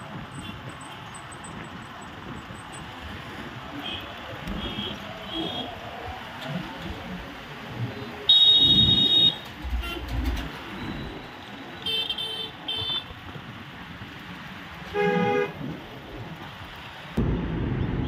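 Steady road-traffic noise with vehicle horns honking now and then: a few faint toots, then a loud, longer honk about eight seconds in, a quick run of short toots around twelve seconds, and a lower-pitched horn blast around fifteen seconds.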